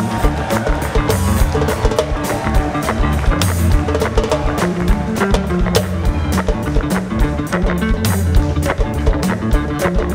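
A live band playing an instrumental groove, with drums and percussion keeping a steady busy beat over a bass line.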